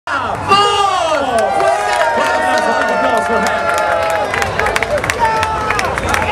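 A man and a woman singing live into microphones, ending on a long held note, with a crowd cheering over them.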